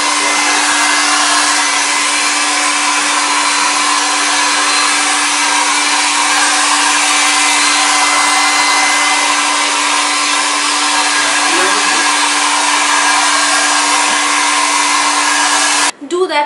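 Compact Philips hair dryer running steadily, a rush of air with a constant hum under it, cutting off suddenly at the very end.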